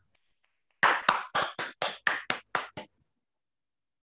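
A person clapping his hands, about nine sharp claps at roughly four a second, starting about a second in and stopping before the three-second mark.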